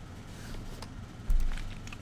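Quiet room tone at a streamer's desk microphone with a few faint clicks, then a dull low thump a little over a second in that fades away.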